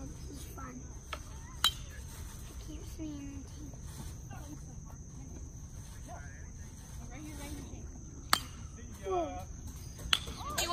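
Baseball bat hitting a pitched ball twice: a sharp crack about one and a half seconds in and another near eight seconds. A steady high insect drone of crickets runs underneath, with faint distant voices.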